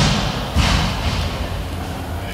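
Two heavy thuds, one right at the start and another about half a second in, each trailing off with a short echo.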